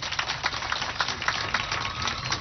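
Crowd applauding: a dense patter of many hand claps.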